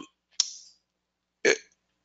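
Dead silence, broken by a single short click with a brief hissing tail about half a second in, then one clipped spoken syllable, "it", about a second and a half in.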